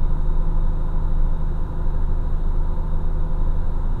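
Heavy loaded truck's diesel engine held on the engine brake in seventh gear down a steep grade, a steady low drone at about 1500 rpm heard inside the cab.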